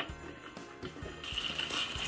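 Quiet background music with a few soft knocks of cardboard boxes being handled. A little past a second in, the sound changes abruptly to a steady hiss.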